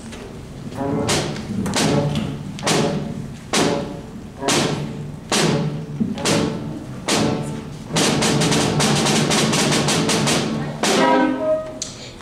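School band of brass and percussion playing a creeping cue: accented hits about once a second, then a quick run of rapid repeated hits about eight seconds in, ending on a held brass chord.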